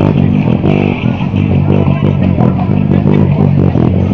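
Loud rock music led by a steady, busy bass guitar line, from a handmade five-string electric bass played through a small 30-watt amplifier.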